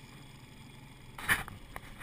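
50 hp outboard motor running steadily at low speed, a low hum under a faint even noise, with a shouted word breaking in a little over a second in.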